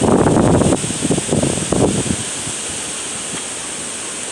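Strong storm wind buffeting the phone's microphone: loud rough gusts in the first two seconds, then a steadier rushing.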